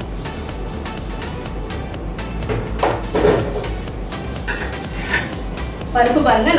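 Background music, with one brief louder sound about three seconds in.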